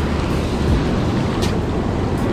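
Fast river water rushing through rapids below a low dam, a loud steady wash with a low rumble under it. Two sharp clicks cut through it, one at the start and one about a second and a half in.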